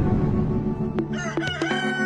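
A rooster crowing, starting about a second in with short rising notes that lead into one long held note, over background music. Before it, a rushing noise fills the first second.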